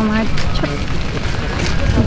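A single spoken word from a woman, then a low rumbling noise under faint background voices.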